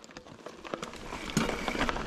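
Mountain bike tyres rolling over loose dirt and gravel, with small clicks and rattles from the bike, getting louder as it picks up speed.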